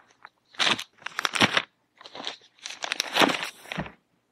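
Plastic poly mailer bags crinkling and crackling as they are handled and stacked, in four short bursts.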